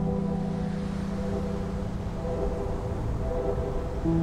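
Background music of low held droning notes: one long note that fades out about two and a half seconds in, followed by a fainter, lower note.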